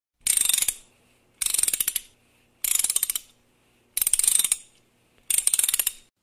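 Ratcheting mechanical clicks, a sound effect for an animated logo: five bursts of rapid clicking, each about half a second long, spaced about a second and a quarter apart.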